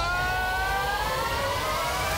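A single pitched tone with several overtones, rising slowly and steadily in pitch like a siren winding up, over a low rumble: a riser sound effect in a trailer soundtrack.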